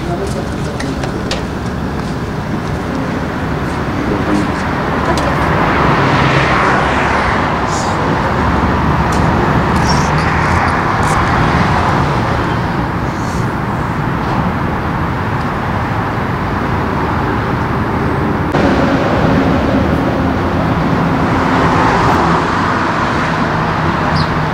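Steady road traffic noise, swelling several times as vehicles pass.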